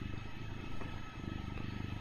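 A domestic cat purring steadily, a fast low pulsing.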